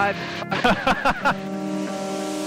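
Two people laughing in the helicopter cabin, then sustained music tones take over about halfway through.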